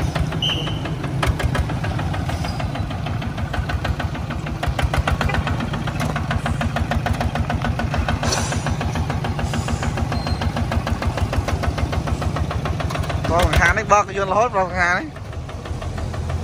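Kubota ZT140 single-cylinder diesel engine on a two-wheel walking tractor, running steadily with a fast, even knock as the tractor drives along. A man's voice comes in briefly near the end.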